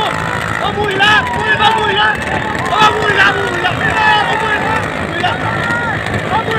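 Men calling out in many short shouts, one after another, over the steady running noise of motorcycles and a cart on the road.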